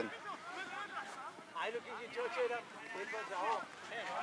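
Faint, overlapping voices of several players talking and calling across the pitch, with no loud close voice.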